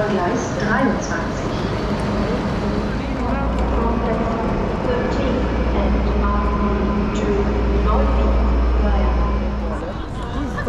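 Busy station-platform sound: people's voices all around, with a parked ICE-T high-speed train's steady low hum coming in about three seconds in and stopping just before the end.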